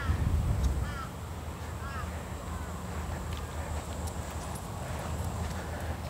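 Wind buffeting the microphone as a low rumble, heaviest in the first couple of seconds, with a bird giving short chirping calls about once a second early on.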